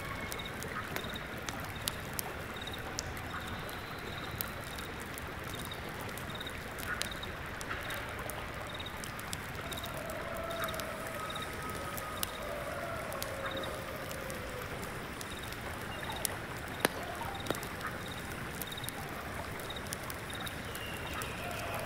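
Layered ambience of a stream running steadily, with small crackling clicks like embers in an incense burner and a single insect chirping high and evenly, about twice a second. A few faint wavering bird calls come in around the middle, and two louder clicks near the end.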